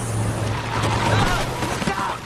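A motor vehicle running with a steady low hum, with a few short high squeals about a second in.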